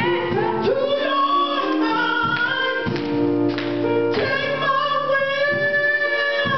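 A woman singing a slow gospel solo through a microphone and PA, her voice sliding and bending between held notes. Steady accompanying chords sound underneath.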